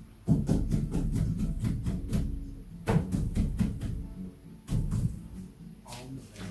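Irregular knocks and clatter of guitars being handled against a wooden cabinet, with low string and body tones ringing under them, in two bursts with a short lull about halfway.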